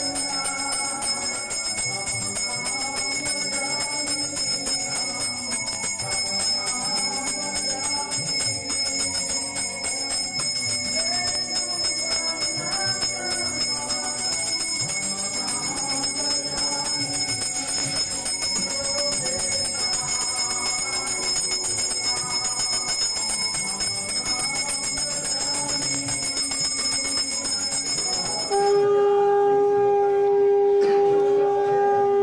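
A bell ringing continuously with music beneath. About two seconds before the end the bell stops and a conch shell begins a long, steady, louder blast.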